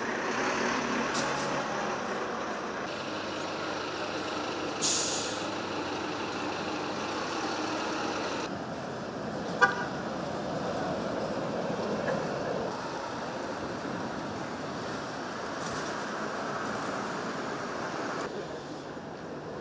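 Street traffic running steadily, with a brief loud hiss about five seconds in and a sharp knock about halfway through.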